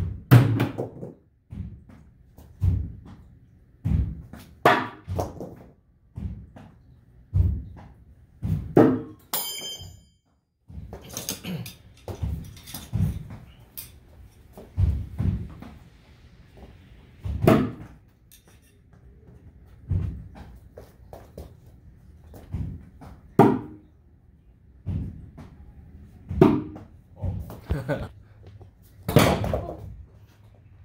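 Steel throwing knives being thrown one after another at a wooden target, each landing as a sharp thunk about every one to two seconds, some striking and clattering; one gives a bright metallic ring about nine seconds in.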